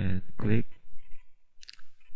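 A man's voice making two short hesitant sounds, then a brief sharp click near the end.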